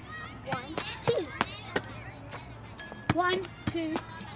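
Footballs being kicked up into the air: a handful of sharp thuds of ball on foot, most in the first two seconds and two more after three seconds, with short children's voice sounds between them.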